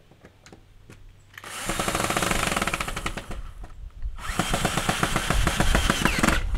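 Cordless drill-driver with a screwdriver bit running on a screw in a wooden door, in two bursts of about two and three seconds with a short pause between; a few faint clicks come before the first burst.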